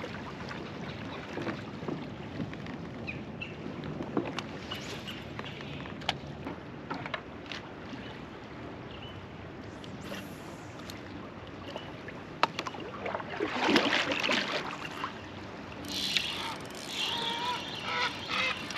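Kayak moving on a flowing river: water rushing and rippling against the plastic hull, with scattered light knocks. The water noise swells louder twice in the last few seconds.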